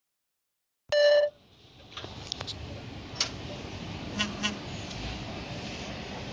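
A short, loud beep lasting under half a second, about a second in, followed by outdoor background noise with a few scattered clicks and knocks.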